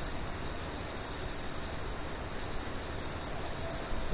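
Steady background hiss with a low hum underneath and no distinct events: the recording's room and microphone noise.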